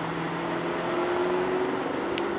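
Loaded hopper cars of a rock train rolling away on the rails: a steady rumble of wheels on track, with a faint tone that drifts slowly up in pitch.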